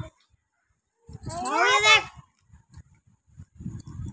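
A voice calling out once in a drawn-out, wavering cry lasting just under a second.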